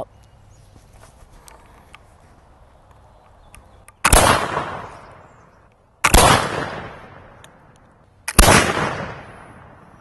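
Flintlock muzzleloading rifle shots, three in all about two seconds apart, each a sharp crack with a long fading tail.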